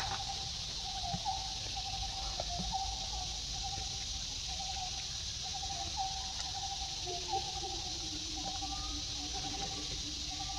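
Outdoor ambience: a steady high insect drone with an animal calling in a continuous run of short, mid-pitched notes. A sharp click comes right at the start, and a faint low tone slides slowly downward near the end.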